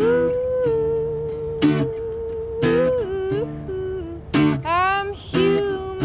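A woman's solo voice holding one long sung note, then bending and sliding upward in pitch, over a few strums of an acoustic guitar.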